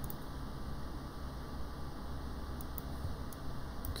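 Quiet, steady room noise with a low hum, broken by a few faint clicks.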